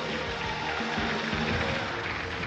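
Music with held notes over a dense, steady backing.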